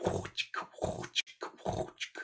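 A person imitating the scraping of a cabasa with the mouth: a quick run of short rasping 'ch' sounds.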